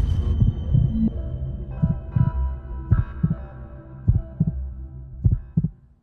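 TV news channel ident jingle: sustained synthesized tones under deep thumps that come in pairs, like a heartbeat.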